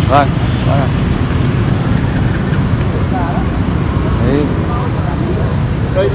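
Outdoor street-market ambience: a steady low rumble throughout, with scattered voices of people talking in the background.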